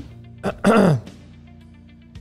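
A man clearing his throat about half a second in: a short catch, then a louder rasp lasting under half a second, over quiet background music.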